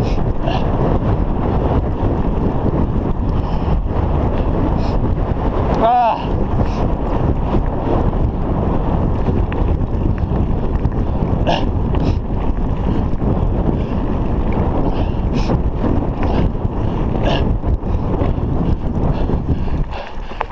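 Wind buffeting a GoPro camera's microphone and a mountain bike's tyres rumbling along a rough dirt road, in a steady loud roar. Scattered short clicks and rattles from the bike run over it.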